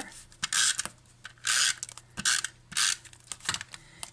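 Stampin' Up! Snail adhesive tape runner drawn across the back of a piece of paper in four short scraping strokes, laying down adhesive.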